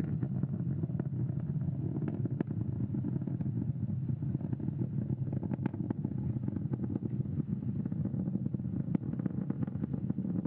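Falcon 9 first stage's nine Merlin 1D engines firing in ascent, heard through the onboard camera as a steady low rumble with occasional faint crackles.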